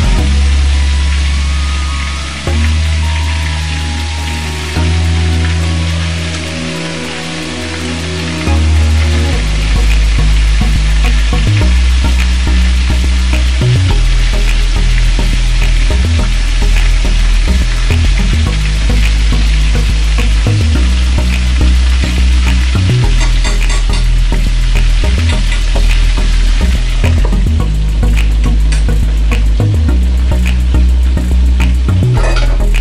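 Chicken frying in a stainless steel skillet: a steady sizzle, with a metal fork clicking and scraping against the pan as the pieces are turned. Background music with a bass line plays underneath.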